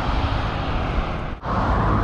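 Highway traffic noise and wind on the microphone of a moving bicycle, a steady rush with heavy low rumble. It breaks off briefly about one and a half seconds in, after which a steady low hum joins the traffic noise.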